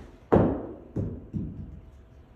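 A golf ball hitting a golf simulator's impact screen with a sharp smack about a third of a second in, then dropping and bouncing twice on the floor with two softer thuds.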